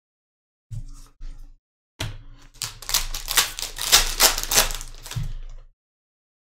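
Trading cards and their foil pack being handled: a couple of short rustles about a second in, then from two seconds in a quick run of crisp clicks and crinkles, several a second, that stops just before the end.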